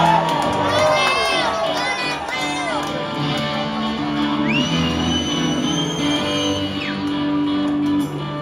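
Live electric guitars playing held, ringing notes, with a crowd whooping, shouting and whistling over them in the first few seconds. About four and a half seconds in, one long high whistle holds for a couple of seconds.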